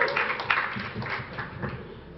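Audience applauding, the clapping thinning out and dying down toward the end.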